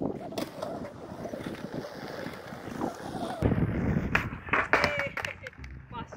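Skateboard wheels rolling on a concrete skatepark floor, growing louder a little past halfway, then several sharp clacks of the board against the concrete in the second half.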